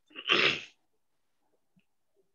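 A person's single short, breathy burst of breath or voice, lasting about half a second.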